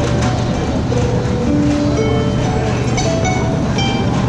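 Harp played live, a slow melody of single plucked notes, over a steady low rumble. A wheeled luggage cart rolls past on the hard floor.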